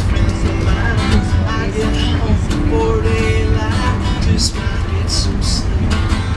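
A country tune played live on an acoustic guitar, strummed, with a held melody line above it. Underneath runs the low, steady rumble of the moving train car.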